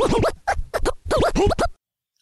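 Turntable record-scratch sound effect: a quick run of swooping back-and-forth pitch sweeps that stops abruptly near the end.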